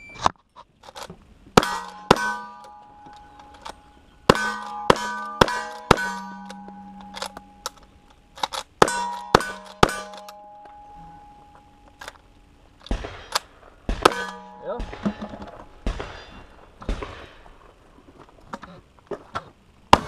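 A cowboy-action shooting string: guns fire a rapid series of shots at steel plate targets, and most shots are followed by the ringing clang of a hit plate. Near the end the shots come with less ringing after them.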